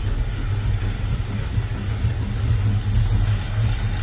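Chevy Nova's carbureted engine idling with a steady low rumble.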